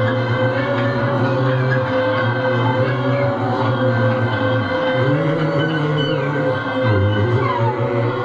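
Live experimental band music from electric guitar and electronic keyboard: a sustained low drone with a steady held tone above it, and a few sliding pitches near the end.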